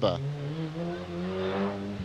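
Small rally hatchback's engine accelerating hard, its pitch rising steadily as it pulls out of a bend.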